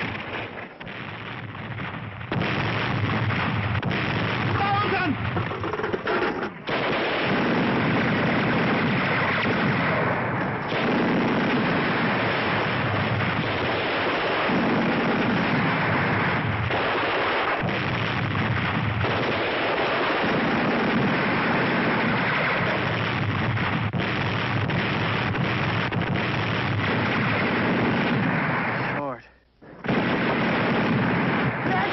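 Dense, unbroken battle gunfire from a 1960s TV war-drama soundtrack: rapid machine-gun and rifle fire packed closely together. It is quieter for the first two seconds, then loud and sustained, and breaks off briefly just before the end.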